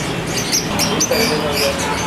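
Small caged birds chirping and squeaking in short high notes.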